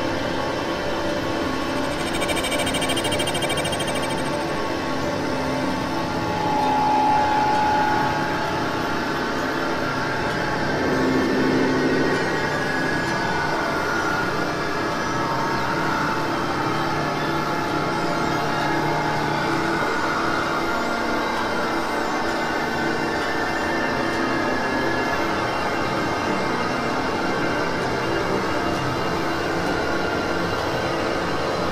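Dense layered experimental music, several pieces playing over one another as one steady wash of held tones and drones. A brief held note stands out about seven seconds in, and a lower one about eleven seconds in.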